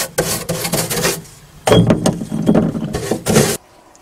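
Stiff paintbrush scrubbing rust killer onto a rusty steel floor pan in quick rough strokes, about five a second, with a short pause before more strokes; the sound cuts off suddenly near the end.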